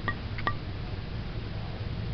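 Two light metallic clicks about a third of a second apart, each with a brief ring, from the hatch door and latch of a travel trailer's front storage compartment being handled, over a steady low background hum.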